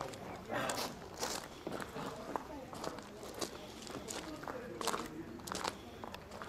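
Footsteps on a path, irregular steps about two a second at most, with people talking in the background.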